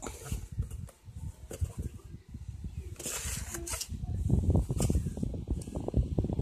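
Handling noise: a cardboard product box rustling in the hands, with a few short scuffs, and a low, uneven rumble on the microphone that grows louder over the last two seconds.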